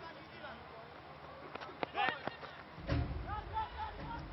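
Cricketers' distant shouts and calls on the field as the batters run between the wickets, over stadium crowd noise. A few sharp knocks come near the middle, and a low rumble swells from about three seconds in.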